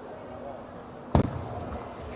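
A single sharp knock with a low thump about a second in, from play at a table tennis table, over faint background voices.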